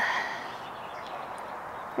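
Faint, steady outdoor background noise with no distinct event, after a voice trails off at the start.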